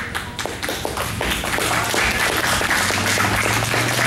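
Onlookers applauding: a few scattered claps that swell into steady applause about a second in.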